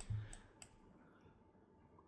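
Two faint, short clicks in the first second, then near silence: room tone.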